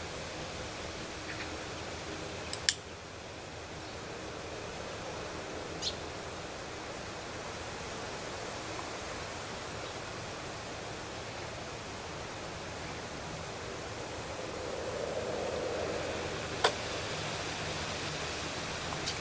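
Steady, even hiss of outdoor background noise, broken by a few short sharp clicks: two close together about two and a half seconds in, a faint one near six seconds and one near the end.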